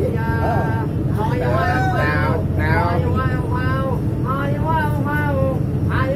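A man singing long, wavering, ornamented notes over the steady low drone of a ferry's engine.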